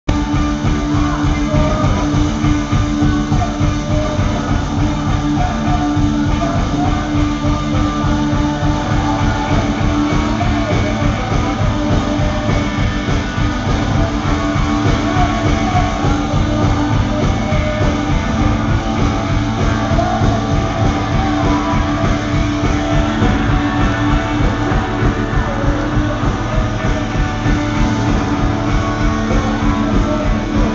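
A two-piece rock band, electric guitar and drum kit, playing a song loudly and without a break, heard live from the stage during a soundcheck.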